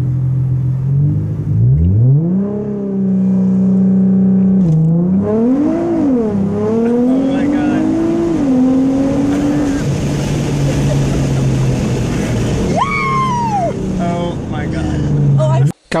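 Ford Mustang engine idling, then revved up sharply and held at a steady raised rpm by launch control. A few seconds later it is released as the car launches, the pitch climbing through the gears with a drop at each shift, before settling to a steady cruise. Near the end there is a brief falling whoop.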